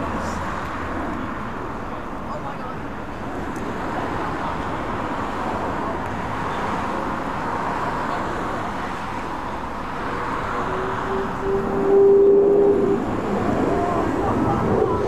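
Distant F-22 Raptor's twin Pratt & Whitney F119 turbofans on approach, a steady jet rush. A steady hum joins in near the end, and the noise swells briefly.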